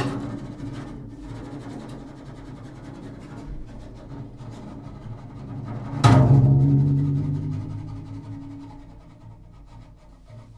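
Solo double bass played with the bow: low sustained notes, then about six seconds in a sudden hard attack on a low note that rings on and fades away over the next few seconds.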